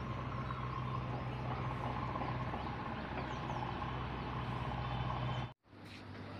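Steady outdoor background rumble of distant road traffic, with a low hum underneath; it cuts off suddenly about five and a half seconds in.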